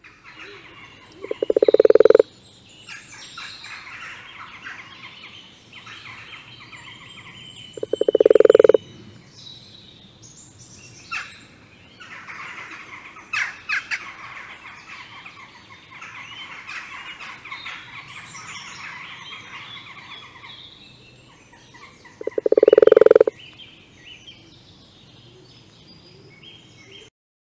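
Eurasian toad (common toad) calling: three loud, pulsed croaks of about a second each, several seconds apart, over a steady background of higher chirps and trills.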